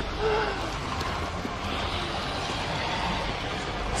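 A steady rushing rumble, with a brief low voice sound, like a grunt or breath, just after the start.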